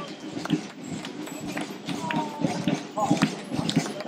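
Voices of people talking along a street, over many sharp clicks and taps of shoes on the road from a marching band walking past.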